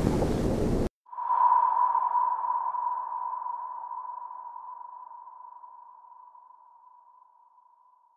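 A short burst of loud noise that cuts off abruptly, then, about a second in, a single high ringing tone that fades slowly over the following seconds: a film sound-design effect.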